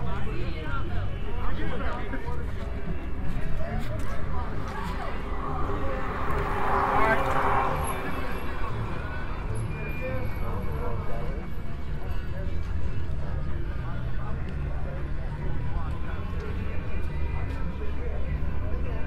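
Outdoor street ambience: passers-by talking in snatches over a steady low rumble, with a louder rushing noise that swells and fades about six to eight seconds in.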